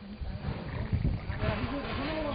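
Low, uneven rumble of a slow-moving SUV's engine, a Mahindra Bolero pulling forward, with indistinct voices in the background from about a second in.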